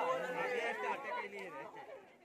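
A crowd of men chattering and calling out at once, several voices overlapping, fading away toward the end.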